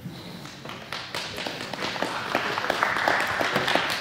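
Audience applauding, starting about a second in and building.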